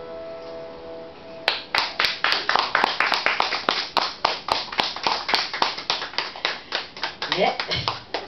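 The electric piano's final chord dies away, then a small audience applauds from about a second and a half in, with distinct, evenly paced claps about three to four a second. A short voice rises near the end.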